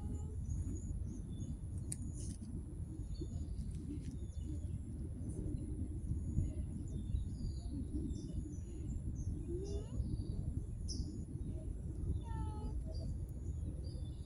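Outdoor ambience: a steady low rumble with small birds chirping and tweeting now and then throughout.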